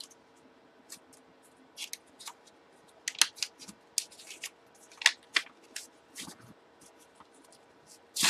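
A paper mailing envelope being handled and opened by hand: scattered crisp rustles and crinkles of paper, busiest in the middle few seconds.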